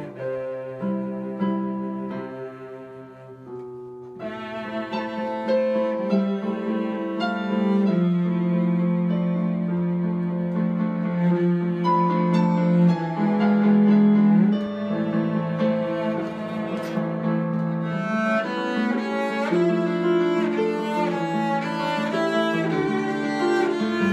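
Cello playing sustained bowed notes over a piano-voiced digital keyboard accompaniment. The music grows louder and fuller about four seconds in.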